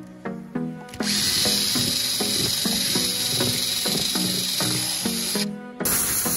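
Loud steady hiss from cleaning work on a throttle body, starting about a second in over background music with a beat. It breaks off briefly near the end and starts again.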